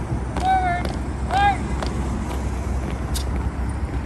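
Two drawn-out shouted drill commands from a color guard commander, about half a second and a second and a half in: the command that sets the color guard marching. A steady low rumble runs underneath, with a few faint clicks.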